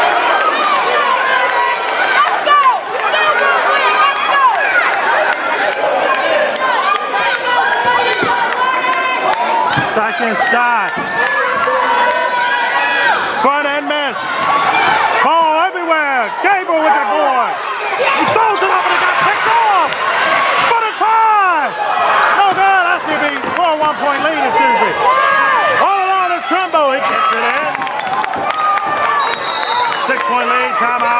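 Basketball game sound in a gym: several voices of players and spectators calling out over one another, and a basketball bouncing on the hardwood court.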